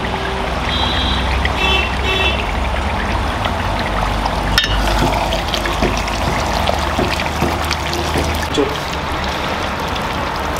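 Minced mutton with liver and kidney frying in hot oil in an aluminium pot, sizzling steadily, with a steady low rumble underneath. A metal spatula stirs it, with a sharp clink about four and a half seconds in.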